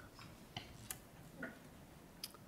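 Near-quiet room tone with a few faint, sharp clicks spaced irregularly, about half a second in, near the middle and shortly after.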